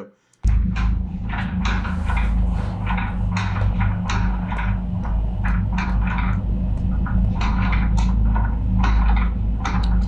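Closet doors rattling and knocking in quick, irregular strokes over a loud steady low hum, picked up by a home security camera's microphone; the sound could be a draft moving the doors. It starts suddenly about half a second in.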